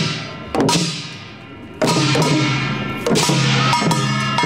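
Korean traditional processional percussion playing: bara cymbals crashing and ringing together with barrel drum and gong strokes, in a slow beat with strikes about half a second in, just under two seconds in and again after three seconds.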